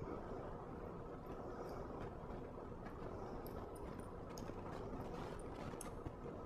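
Quiet room tone with a few faint, light ticks spread through it: fingers handling a tiny screw against the aluminum bumper frame of a phone.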